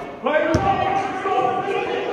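A basketball bouncing once on a hardwood gym floor about half a second in, over voices calling out.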